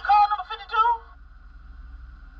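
A voice from the playing video, sounding speech- or sing-song-like through a small laptop speaker, cuts off about a second in. It leaves a steady faint hum.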